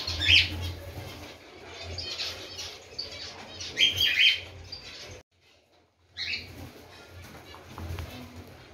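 Flock of cockatiels calling with short, loud chirps, the loudest about a third of a second in and around four seconds in, with wing flapping as more birds land. The sound drops out for most of a second just past the five-second mark.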